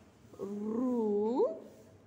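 A woman's voice holding one long drawn-out syllable for about a second, its pitch dipping slightly and then rising at the end. She is slowly sounding out a Tamil word syllable by syllable as she writes it.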